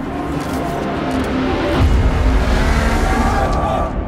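Dense action-trailer sound mix: music under loud noisy effects, with a deep low boom swelling about halfway through.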